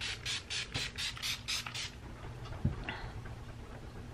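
Pump-mist bottle of Skindinavia makeup primer spray being spritzed at the face: about eight quick hissing sprays, roughly four a second, ending about two seconds in. A soft knock follows near the end.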